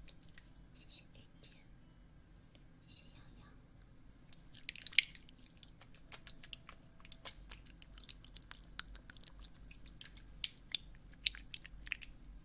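Close-miked ASMR sounds on a binaural ear microphone: a few soft breathy, whisper-like hisses in the first seconds, then from about four seconds in a dense run of sharp crackling clicks and pops, the loudest one a little before the middle.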